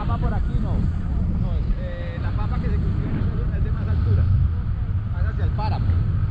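Wind from a paraglider's flight buffeting the camera microphone as a steady low rumble. Faint voices come through underneath.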